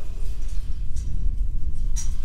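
Low, steady rumble of wind buffeting an outdoor microphone, with a couple of faint light clicks.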